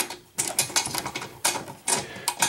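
Irregular metallic clicks and rattles of the door fastener on an aluminium Alusig pedestrian signal housing being turned by hand, as it is unscrewed to open the door.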